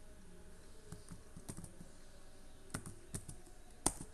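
Keystrokes on a computer keyboard typing out a single word, clicking in irregular small groups, with the loudest keystroke just before the end.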